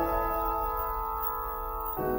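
Piano chord struck and held, its notes ringing on and slowly fading, with new notes played near the end.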